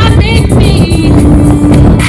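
A woman singing an R&B song live into a microphone over loud backing music with a steady beat, her voice wavering with vibrato and then holding one long note through the second half.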